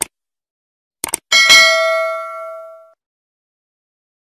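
Subscribe-button animation sound effect: a short mouse click, then two quick clicks about a second in. They are followed at once by a bright notification-bell ding that rings on, fading, for about a second and a half.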